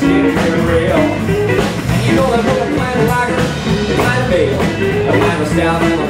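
Live blues band playing, electric guitar over drums, with no words sung in this stretch.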